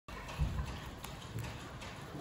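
Guinea pigs munching dry hay: irregular soft crunches of chewing and the rustle of hay stalks, with a slightly louder thump about half a second in.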